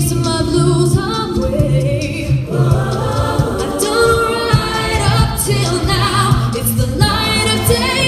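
Mixed-voice a cappella group singing, amplified through stage microphones and speakers: a lead voice over backing harmonies and a low bass line, with sharp percussive clicks throughout.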